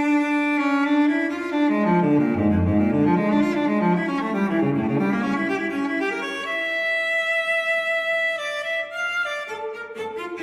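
Instrumental background music with slow, held low notes in a bowed-string, cello-like sound. A higher note is held from about six and a half to eight and a half seconds in.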